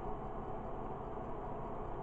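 Steady low background hum and hiss of the room, with no distinct sound events.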